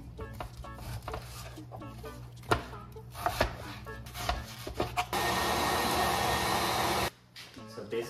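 A Dexter knife slicing raw beef on a plastic cutting board, its blade knocking sharply on the board now and then. About five seconds in, a loud steady rushing noise runs for two seconds and cuts off abruptly.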